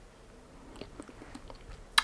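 Faint, wet lip and mouth clicks as a matte lip crayon is drawn across the lips, a scatter of small ticks in the second half.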